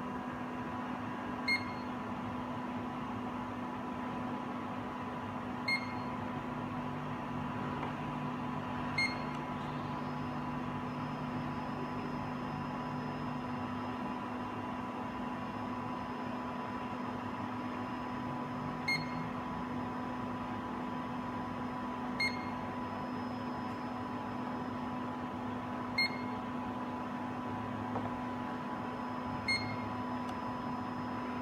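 Zeiss Contura coordinate measuring machine running with a steady electrical hum. A short high beep sounds seven times, every three to four seconds, as the probe registers a touch point on the bores. A lower motor drone comes in for several seconds in the middle while the axes drive the probe head.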